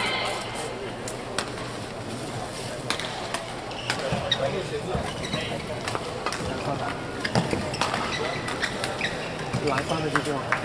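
Indoor badminton hall ambience between rallies: a steady murmur of indistinct voices with scattered sharp clicks, and a short rising squeak right at the start.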